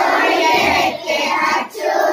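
A class of young schoolchildren singing together loudly in unison, an action song, breaking off briefly near the end.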